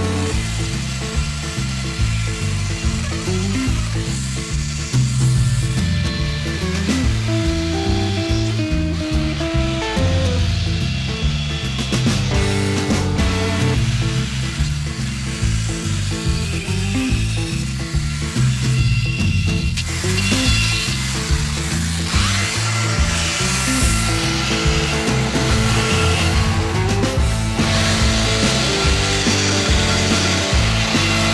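Background music over a chainsaw cutting into a driftwood post, the saw running steadily under the music.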